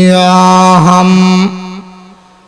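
A man's voice chanting a devotional verse through a microphone, holding one long wavering note that breaks off about one and a half seconds in and tails away.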